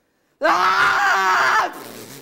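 A woman's loud, drawn-out, strained vocal sound that starts after a short silence and lasts just over a second, with no clear words. It is a deaf woman's imitation of the indistinct speech she made as a deaf child introducing herself to her class.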